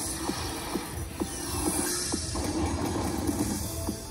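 Slot machine's electronic bonus music: a run of short chiming notes, a few a second, over a steady hum, as the Ultimate Fire Link hold-and-spin bonus starts up.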